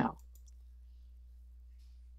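The tail of a spoken word, then a quiet pause filled by a steady low electrical hum and a few faint clicks soon after the voice stops.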